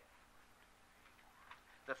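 Near silence: room tone with faint hiss during a pause in a man's speech, and a man's voice starting again at the very end.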